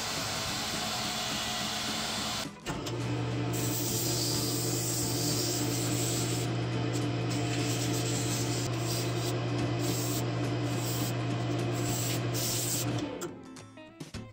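Wood lathe running with a steady motor hum while sandpaper is held against a spinning wooden vase blank, giving a continuous sanding hiss. The sound breaks off briefly a few seconds in and falls away about a second before the end.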